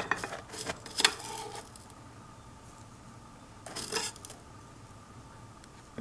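Metal teaspoon scooping dried loose tea from a tea tin into a metal infuser box: small scrapes, clinks and rustles in the first second and a half and again briefly around four seconds in.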